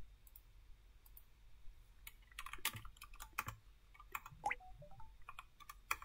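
Typing on a computer keyboard: a run of irregular key clicks, sparse at first and quicker from about two seconds in.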